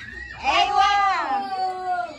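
A person's long, drawn-out vocal call that starts about half a second in, holds and slides downward in pitch for about a second and a half.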